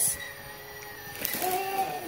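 A wrapped gift box is picked up and handled, with faint rustling. About halfway through comes a short, soft, level-pitched child's vocal sound.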